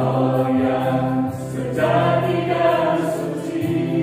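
A small mixed vocal group singing an Indonesian worship song in harmony over sustained keyboard chords, with a new sung phrase starting about two seconds in.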